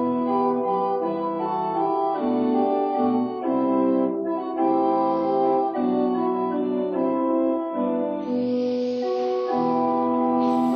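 Organ playing a hymn introduction in slow, held chords, with a short hiss near the end.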